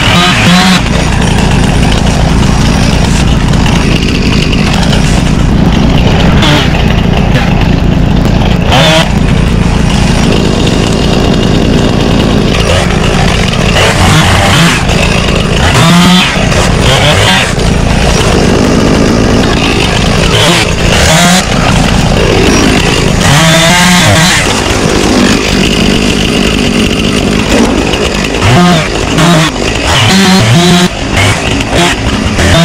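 Gas chainsaw running and revving up and down as it cuts brush, with a steady low engine hum underneath.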